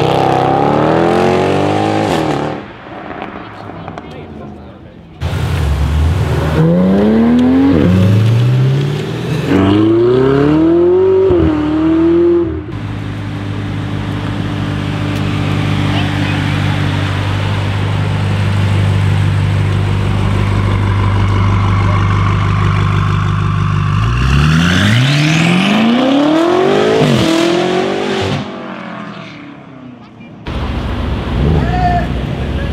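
Performance cars accelerating hard one after another. A Mercedes-AMG E63's V8 revs away at the start, and more full-throttle runs climb in pitch with drops at each gear change. A long steady low engine note follows as a BMW M5 rolls up, then another hard acceleration with climbing revs near the end.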